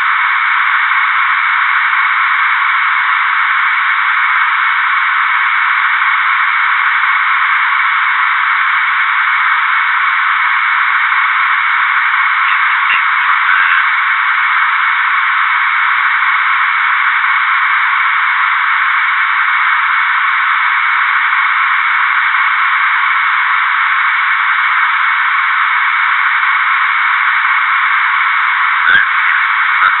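Steady, thin, telephone-like hiss of a cockpit voice recorder's background noise, with a few faint clicks about 13 seconds in and again near the end.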